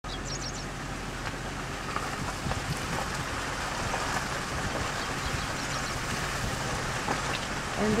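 Steady outdoor background noise with a low hum underneath, and a few faint high chirps near the start.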